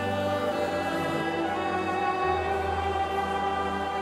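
Live worship band playing slow, held chords, an electric guitar among them, with voices singing along. The bass moves to a lower held note a little past halfway.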